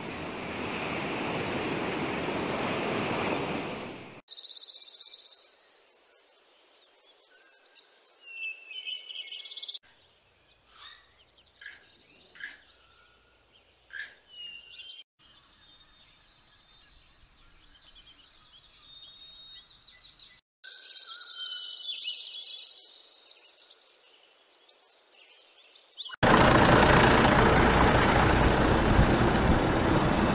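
Several short outdoor recordings in a row: steady rushing noise at first, then small birds chirping and calling at intervals with a few faint clicks in a quieter stretch, and loud steady rushing noise again near the end.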